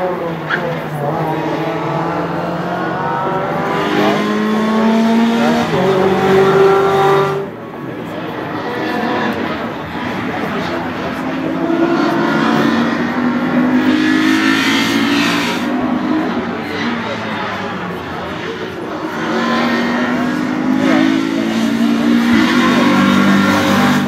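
Renault Clio racing cars passing one after another under hard acceleration. Each engine note climbs and drops back as the car shifts up through the gears.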